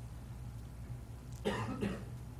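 A person coughs twice in quick succession about a second and a half in, over a low steady hum in the room.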